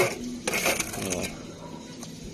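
Steel trowel scraping and clinking against a metal basin as cement mortar is scooped out, with short metallic clicks in the first second.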